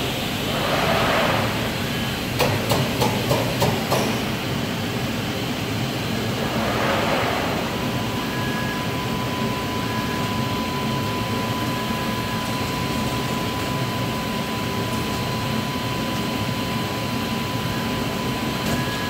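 HP Scitex 15500 corrugated-board digital printer running with a steady mechanical hum. A rush of air comes near the start and again about seven seconds in, a quick run of about six clicks comes around three seconds in, and a thin steady whine sets in at about eight seconds.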